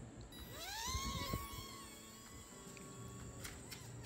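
Small electric propeller motor of a POWERUP 4.0 paper-plane dragon whining in flight. Its pitch rises about half a second in, holds steady, then fades away by about three seconds.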